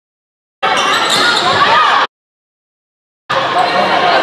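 Gym sound from a volleyball match: voices and the ball being played, in two edited snippets. Dead silence for about half a second, a burst of about a second and a half that cuts off sharply, a second of silence, then the sound comes back near the end.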